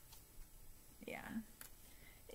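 Quiet room with a woman's soft, half-whispered "yeah" about a second in.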